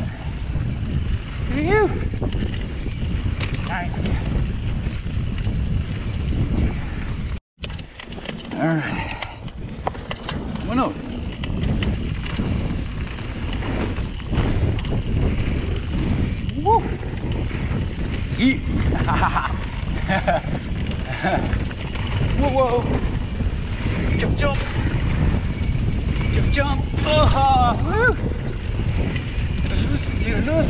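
Wind buffeting the microphone of a camera on a moving mountain bike, over the rumble of the tyres rolling along a dirt trail. Short voice-like sounds come and go. The sound breaks off for an instant about seven seconds in.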